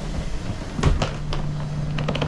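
Steady low hum of a stopped train carriage's ventilation, with a few knocks and clicks from footsteps and wheeled suitcases crossing the train doorway, the loudest a little under a second in.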